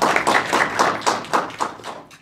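Audience applause: a small group clapping in quick, irregular claps that taper off near the end.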